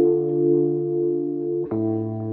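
Background music: sustained held chords, changing to a new chord near the end.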